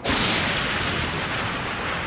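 Thunderclap sound effect: a sudden loud crack at the start that dies away slowly.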